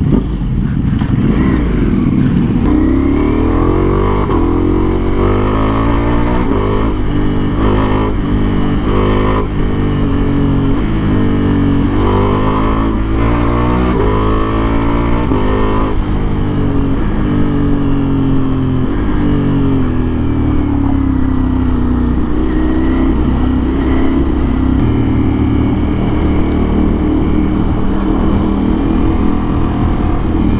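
Ducati Multistrada V4's V4 engine running loud through an exhaust with the catalytic converter removed. Its pitch climbs and drops again and again through the first half as it accelerates and shifts, then holds a steadier note while cruising.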